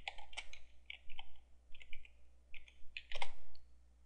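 Typing on a computer keyboard: a quick run of keystrokes, with a louder clack about three seconds in.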